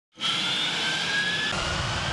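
Boeing 747 jet engine running: a steady rush with a high whine. About one and a half seconds in, the whine weakens and a low rumble grows.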